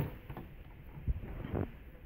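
Faint clicks and taps of plastic test leads and plug-in modules being handled as a multimeter lead is fitted to a diode on a trainer board, with a sharper click at the start.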